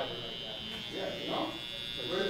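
Cordless hair trimmer running with a steady high-pitched buzz, with a faint voice speaking about a second in.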